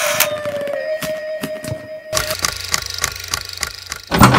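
Intro jingle music: a held electronic tone that cuts off about two seconds in, followed by a run of quick, evenly spaced clicking hits.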